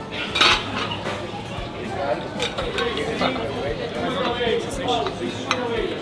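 Metal utensils clinking against steel pans and plates as pork is lifted from a pot of stew, a few sharp clinks spaced over several seconds, with voices behind.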